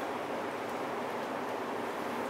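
Steady, even background hiss of room tone, with no distinct events.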